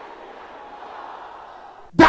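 Many women's voices praying aloud all at once, blending into one steady wash of crowd sound in which no single voice stands out.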